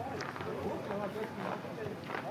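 Two-man bobsleigh's steel runners sliding on the ice track, a steady hiss with faint voices behind it.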